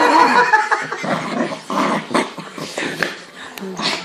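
Small white fluffy dog vocalising excitedly as it jumps up at a man, with the man laughing.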